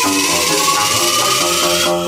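Brazilian funk (baile funk) DJ mix playing loud from a Pioneer DJ controller. A tone rises steadily in pitch over the beat and cuts off with the high hiss right at the end.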